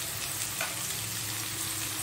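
Sliced onions and chopped tomato sizzling steadily in hot oil in a metal kadai.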